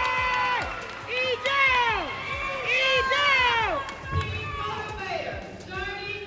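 Audience cheering for an award winner: long, high-pitched shouts and whoops that swell and fall away, one held at the start and two more about one and three seconds in, over crowd noise and scattered clapping.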